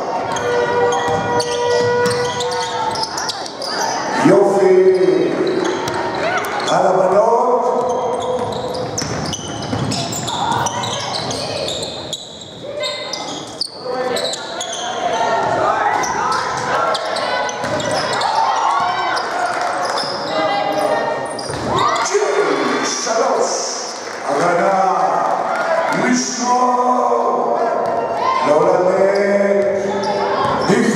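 Basketball game sounds in a large gym: the ball bouncing on the hardwood court, with players and coaches calling and shouting throughout, echoing in the hall.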